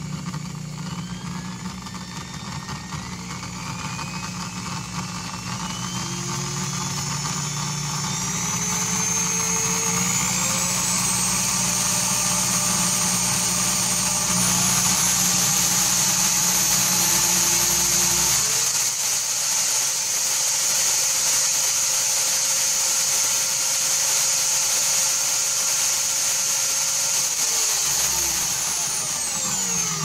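Variable-speed corded electric drill motor running up under a slowly squeezed trigger, its whine stepping upward in pitch over the first fifteen seconds or so. It then holds steady at about 1,400 rpm and winds down with a falling pitch near the end as the trigger is let go.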